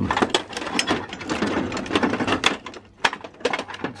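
Corrugated stainless steel flexible water heater connectors rattling and clicking against each other and their packaging as a handful is grabbed and pulled from a drawer: a dense run of metallic clicks, briefly easing about three seconds in.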